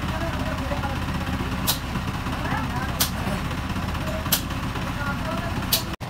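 A steady low engine rumble, like a vehicle idling, with four sharp knocks about a second and a half apart.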